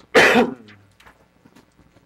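A person's single short, loud cough, just after the start.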